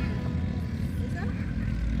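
Steady low engine rumble, with a faint voice about a second in.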